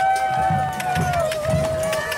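A crowd of marching mummers. Voices hold one long note that slides down near the end, over low thumps about twice a second and light jingling and clicking.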